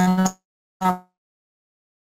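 Two brief, steady-pitched vocal sounds from a man, like hesitation noises ('uhh'), one at the start and a shorter one just under a second in.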